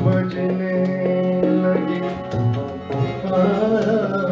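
Live harmonium and electric guitar playing a mostly instrumental ghazal passage. The harmonium holds a steady low note under a stepped melody, with light, regular percussion strokes.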